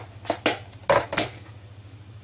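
Clicks and knocks of a game disc and its plastic case being handled, four or five sharp sounds in the first second and a half, then quieter, over a low steady hum.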